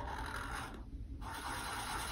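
Black marker scratching on a paper plate while drawing an eye, in two spells of scribbling with a short break about a second in.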